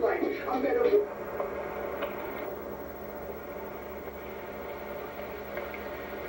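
A title-card song with a voice, played back through a television speaker, ends about a second in. After that there is only a steady tape hiss with a low hum.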